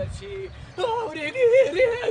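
A person's high voice wailing or singing out in drawn-out notes whose pitch wavers up and down, starting just under a second in and loudest toward the end.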